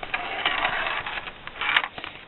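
Plastic Perplexus maze sphere being turned and handled in the hands: a scraping, rustling noise for about a second, then a shorter burst near the end.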